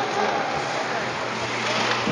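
Indoor ice rink ambience during play: a steady noise with a low hum, and faint voices of players in the background.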